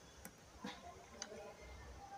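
A needle clicking faintly as it pierces fabric stretched taut on an embroidery frame during zardosi work, three short clicks.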